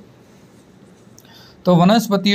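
A short pause in spoken narration with only faint room hiss, then the voice starts speaking again near the end.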